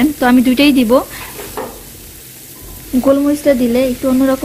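Prawns with garlic and green chillies sizzling in oil in a frying pan, a faint steady hiss heard between a woman's spoken words at the start and end.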